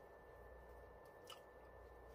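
Near silence: room tone with a faint steady high whine and a single small click just over a second in.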